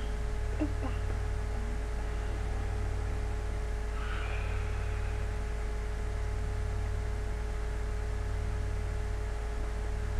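Steady low electrical hum with a faint steady tone above it, the background noise of the room and recording, with a faint brief sound about four seconds in.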